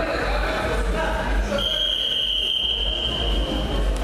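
A long, steady, high-pitched electronic beep from the mat's timing buzzer, held for about two seconds, over the murmur of the hall's crowd.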